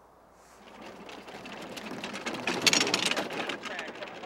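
Bobsled running down an ice track: the runners scrape and rattle on the ice, a clattering noise that builds from nothing to its loudest just before three seconds in, then eases.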